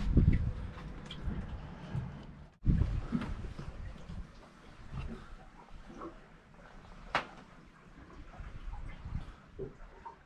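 Low thumps and knocks of footsteps and handling on a boat's deck and in its aft locker. A heavier thump comes about three seconds in, and a sharp click about seven seconds in.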